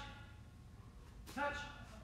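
A man's voice calling out "touch" twice, about a second and a half apart, with quiet room tone between.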